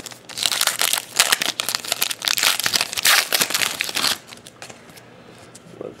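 Foil wrapper of a trading card pack being torn open and crinkled, a dense crackling that lasts about four seconds and then dies down to quieter handling as the cards come out.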